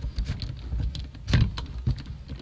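Rustling and light knocks of handling and movement, with a low rumble, and a louder thump about a second and a half in.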